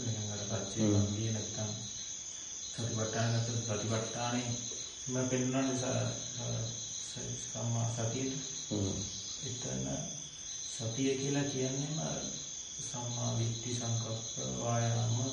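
Insects chirring steadily at a high pitch throughout, under a man's voice speaking in short, even phrases with brief pauses.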